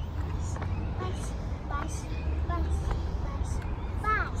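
A steady low rumble, with short faint voices in the background.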